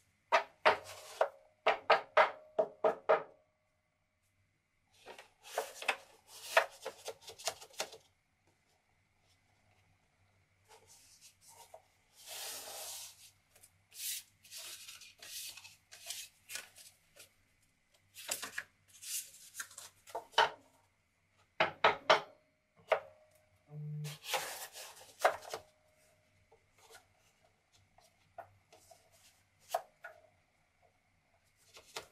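A stack of paper cards being jogged, the edges knocked against a wooden bench in quick runs of taps, with paper sliding and rustling in between.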